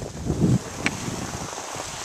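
Wind buffeting the microphone of a handheld camera moving downhill, with a stronger low gust about half a second in, then a steady rush.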